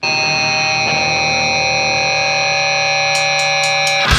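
A steady, shrill drone of several high held tones, like an alarm or amplifier feedback, sounding between songs of a grindcore recording, with a few faint ticks near the end.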